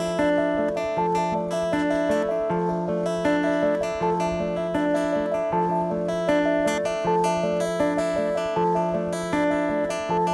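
Live band music: an instrumental passage led by a strummed acoustic guitar, with pitched notes repeating in a steady pattern.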